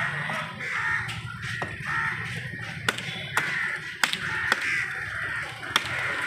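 A large knife chopping paarai (trevally) on a wooden block, sharp strokes at an irregular pace of about one a second, with crows cawing repeatedly.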